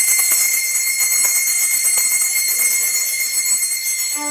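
Small hand bells shaken continuously with a bright, high ringing that starts suddenly and holds, easing slightly near the end. This is the bell that signals the start of Mass as the ministers enter.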